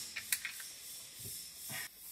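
A few faint clicks of a hand tool on the transducer's mounting nut as it is tightened up against the hull, over a low steady hiss.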